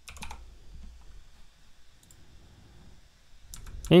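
Computer keyboard keystrokes in a short quick cluster at the start as a value is typed in, then a few sharp clicks shortly before the end, over a faint low hum.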